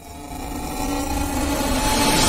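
An electronic transition sound effect: a rising swell of rumble and hiss with a couple of faint held tones, growing steadily louder.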